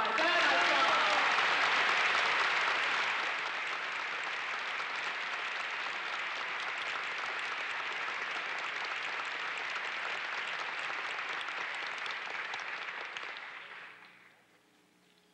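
A large audience applauding: loudest for the first few seconds, then steady, and dying away near the end.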